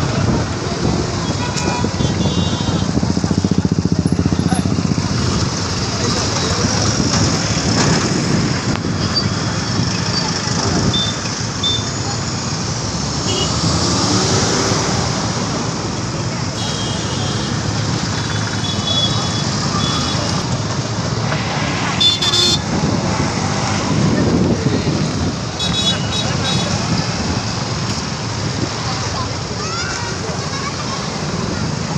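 Busy road traffic and a crowd's voices, with short vehicle horn toots now and then.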